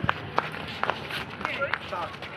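A scuffle as a group of men grab and beat a suspect: raised men's voices, scuffling feet and several sharp smacks of blows.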